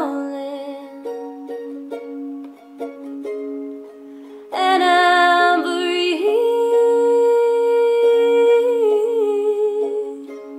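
Plucked-string accompaniment with a low note repeating steadily about twice a second. About four and a half seconds in, a woman's wordless singing joins it, held on long notes.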